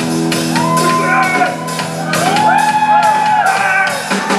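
Live rock band playing loud: an electric guitar holds a chord over drum strokes, then pitches slide up, hold and fall back over the top, with shouting mixed in.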